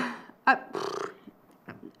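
Women talking: the end of a spoken question and a short, hesitant, breathy 'uh', followed by a pause with little sound.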